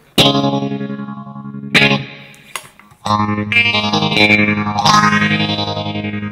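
Electric guitar played through a NUX Mighty Air Bluetooth practice amp on its clean channel, its tremolo effect at full rate so the volume pulses rapidly. Chords are struck three times, each left to ring.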